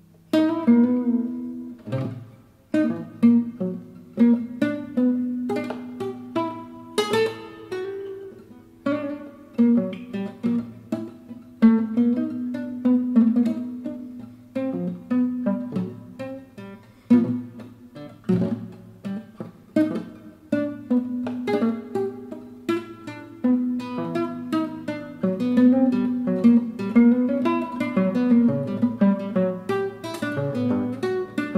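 Fretless nylon-string classical guitar played fingerstyle in a free, atonal improvisation: a stream of plucked single notes and chords, some left ringing, some cut short. It opens with a sharply plucked note right after a brief hush.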